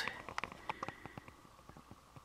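Faint handling noise: small scattered clicks and light taps, thinning out after about a second and a half, over low room tone.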